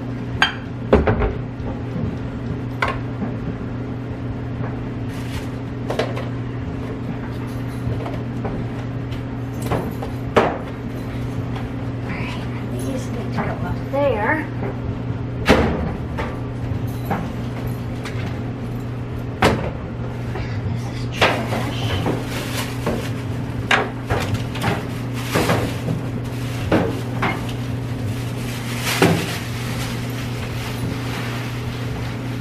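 Plastic containers and packs of laundry products being handled and set down on a shelf and the washer top: a series of scattered knocks, clacks and rustles over a steady low hum.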